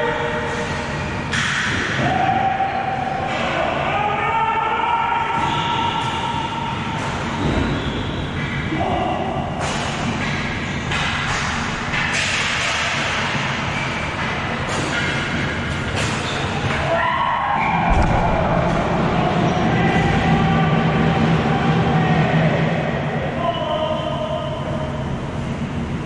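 Ball hockey game in an echoing arena: players shouting and calling to each other over a steady hall rumble, with sharp clacks of sticks and ball on the concrete floor and a heavy thud about eighteen seconds in.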